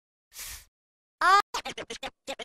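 DJ-style vinyl record scratching: a short scratch, then a brief pitched scratched snippet, then a quick run of rapid scratch strokes, about a dozen a second, leading into a beat.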